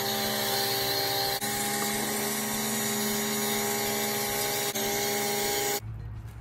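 Pressure washer motor and pump running steadily, with the hiss of a foam cannon spraying soap, dipping briefly twice and cutting off suddenly just before the end.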